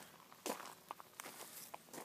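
Faint footsteps outdoors, with scattered light clicks and rustles; one clearer click about half a second in.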